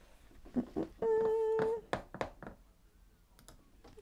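Scattered light clicks and knocks of handling, with a short steady tone held for under a second about a second in.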